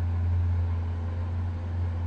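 Steady low drone of machinery running at neighbouring construction work, with a faint higher hum above it.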